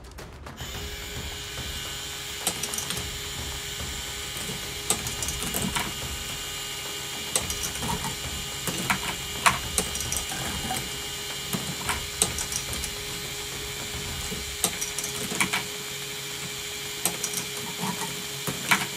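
K'NEX Marble Coaster Run's battery motor switching on about half a second in, then running steadily and driving the chain lift. Irregular sharp clicks and clatters come throughout from the plastic marbles rolling and knocking through the track, toggles and flipper arms.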